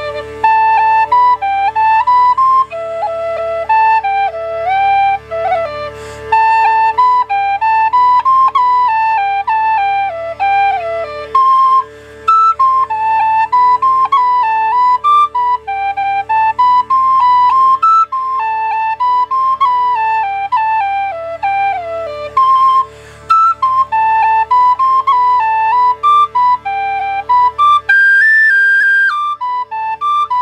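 An Irish whistle plays a slip jig melody in E minor at a slow tempo, moving in quick stepwise notes with ornaments and brief breaths, and climbing higher near the end. A steady drone sounds beneath it.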